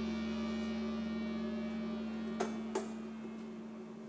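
A steady electrical hum through the hall's sound system while the last of a soundtrack fades out, with two sharp clicks close together about two and a half seconds in.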